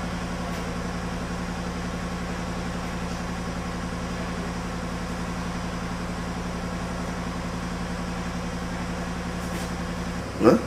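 A steady low hum at one unchanging pitch, even in level throughout.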